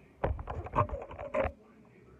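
Close handling noise at the recording phone's microphone: a burst of rustles, scrapes and clicks lasting about a second and a quarter, as clothing and hands brush right against it.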